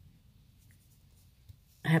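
Near silence: quiet room tone with a faint knock about one and a half seconds in, then a woman's voice comes back in near the end.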